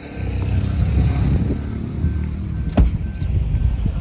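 Maruti Suzuki car engine starting right at the start and settling into a steady idle. A single sharp thump, the loudest sound, comes just before three seconds, with faint short repeated beeps around it.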